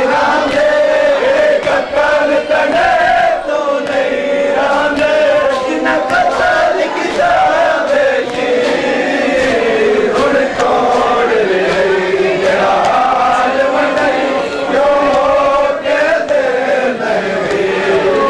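Crowd of men chanting together in one continuous, melodic Muharram mourning chant, the tune wavering up and down without a break.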